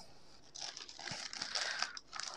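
Thin plastic courier pouch crinkling faintly as it is pulled open and a small boxed item is drawn out, starting about half a second in.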